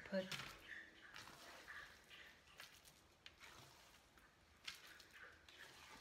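Faint, sporadic scraping and a few light knocks as thick, wet batter is scraped out of a stainless steel mixing bowl and dropped onto a silicone-lined baking sheet.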